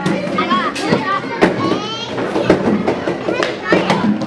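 Children chattering and calling out as they play, with several sharp clacks among the voices.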